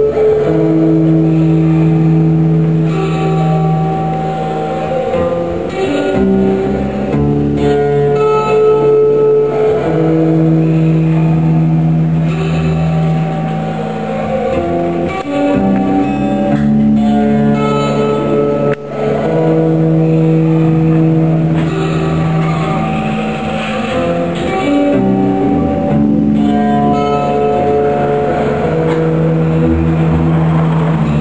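Acoustic guitar played solo, fingerpicked chords and single notes left to ring, in a chord sequence that repeats about every ten seconds.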